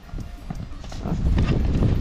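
Horse's hooves galloping on loose sand, the hoofbeats growing louder as it comes closer and digging in hard as it swings into a sharp turn near the end.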